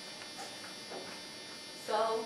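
Steady electrical buzz and hum made of many fine high tones over a low noise floor. A person's voice starts briefly near the end.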